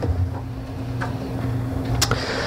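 Steady low hum of room tone, with a faint click about a second in.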